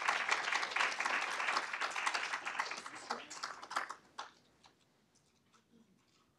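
Audience applauding, a dense patter of many hands clapping that dies away about four seconds in, leaving a few scattered claps.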